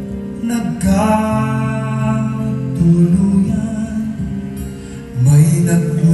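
Live acoustic ballad: a man singing to his own acoustic guitar, with sustained notes that swell louder near the end.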